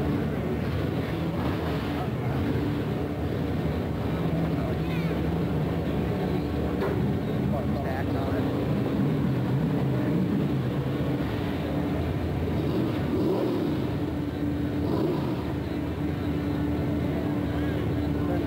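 A truck engine running steadily, with voices in the background.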